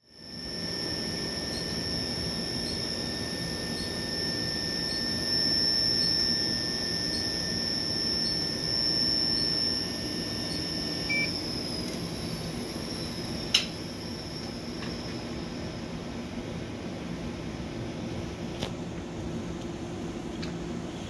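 GE Senographe Essential mammography unit making a phantom test exposure: a steady high-pitched whine with a quieter tone beneath it, over a low room hum. The whine drops slightly in pitch and fades about twelve seconds in, just after a short beep, and a sharp click follows a moment later.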